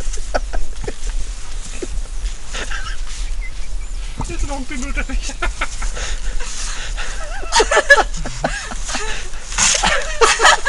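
People's voices in short bursts of talk and laughter, over a low steady hum.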